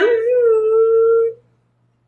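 A woman's voice drawing out one long, whiny, howl-like note. It steps up in pitch at the start, holds steady for over a second and stops about a second and a half in.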